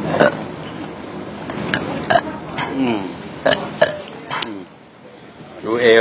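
A person burping repeatedly: several short belches spread through a few seconds, with a longer, louder one near the end.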